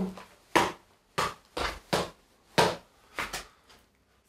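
A footbag kicked repeatedly with the inside of the shoe, switching between right and left feet, giving a series of about six short, dull thuds spread over three seconds.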